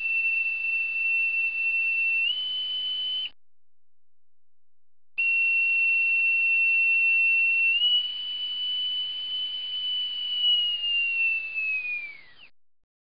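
A steady, high, pure electronic tone over a hiss. It steps up slightly in pitch after about two seconds, breaks off for about two seconds, returns, steps up again, and slides down in pitch near the end.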